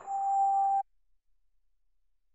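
Mobile phone's call-ended tone: a single steady beep lasting just under a second as the call is hung up, cutting off suddenly.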